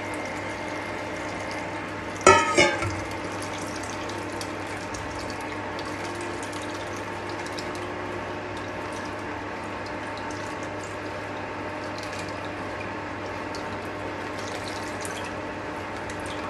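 A steel vessel set down on metal with a sharp clank and brief ringing about two seconds in, over a steady appliance hum. After that come faint wet squelches and drips as hot-water-soaked grated coconut is squeezed by hand in a steel strainer.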